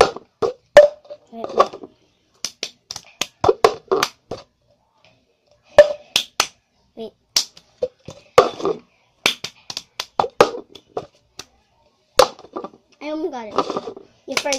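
Hand claps and a cup being tapped and knocked on a hard surface, in the clap-and-tap pattern of the cup game, coming in quick irregular strokes with a short pause in the middle. A child's voice murmurs between the strokes, most clearly near the end.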